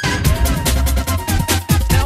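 Electronic bass music from a live DJ mix: dense broken-beat drums over heavy deep bass, with gliding synth notes.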